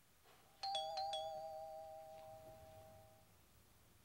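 Doorbell chime rings with two tones, one after the other, about half a second in, and dies away over a couple of seconds.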